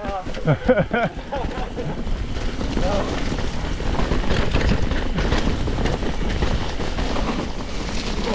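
Wind noise on the microphone and mountain bike tyres rolling over leaf-covered, muddy dirt trail while riding downhill, a steady rushing noise. A man laughs briefly at the start.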